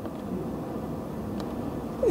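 Low, steady room rumble, with a faint click about one and a half seconds in.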